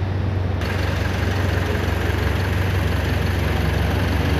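Tata 3.3-litre diesel engine idling steadily, a low even rumble.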